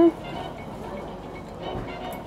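Steady street background noise with no distinct event, just after a hummed 'mmm' of enjoyment ends at the very start.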